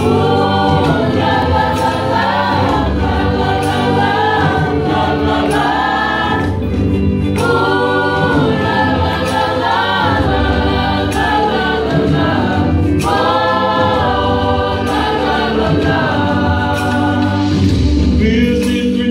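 A mixed youth choir singing a gospel song in long sustained phrases, with two short pauses for breath partway through.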